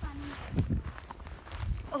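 Footsteps in snow, a low thud roughly once a second as a person walks along a snowy trail.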